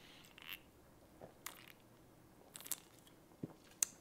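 A person drinking from a can of cola: faint sips and swallows, heard as a handful of short, soft clicks and gulps spread through the seconds.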